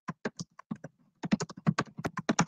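Typing on a computer keyboard: a few separate keystrokes, a short pause about halfway through, then a quicker run of keystrokes.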